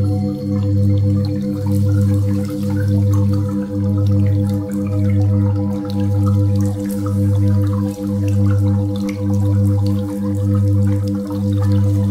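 Sound-healing drone music: a deep hum pulses about once a second, with faster throbbing tones above it about four times a second and a steady higher tone near 528 Hz. Faint scattered drip-like sparkles sit over the top.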